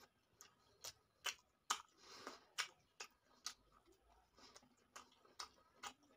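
A person chewing a mouthful of tandoori chicken close to the microphone: wet mouth clicks and lip smacks, sharp and irregular at about two a second, with a softer squelch about two seconds in.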